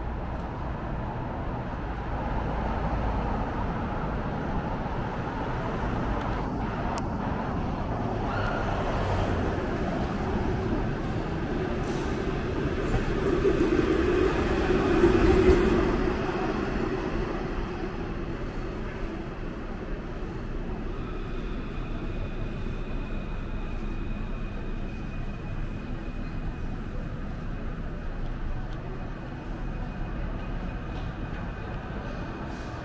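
Street traffic with an articulated electric tram passing close by, its rumble building to the loudest point about halfway through and then fading away.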